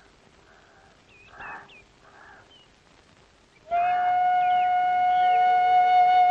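A few faint bird chirps over quiet background, then, a little past halfway, a flute comes in loudly on one long steady note as film background score.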